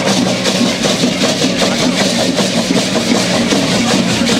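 Dense, continuous rattling of many dancers' rattles shaken together: cocoon-style leg rattles wrapped around their shins and hand-held rattles, rattling with every step and shake.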